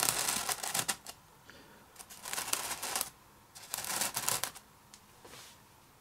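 Miniature figures on square bases being handled, slid and set down on a tabletop game mat: three short bursts of scraping and clicking about a second apart, with a fainter one near the end.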